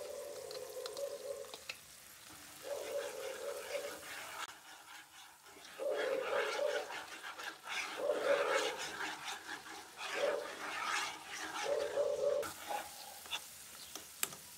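Metal spoon scraping tomato paste out of a bowl and stirring it into peppers frying in olive oil in a non-stick pan, with light sizzling. About six drawn-out scrapes, each near a second long.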